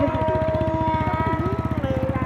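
A woman's voice holding one long sung note with a slight waver, its pitch dropping a little near the end, over a low, fast, steady throbbing.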